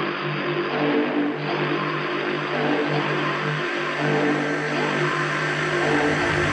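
A steady mechanical drone with a low hum, even in level throughout.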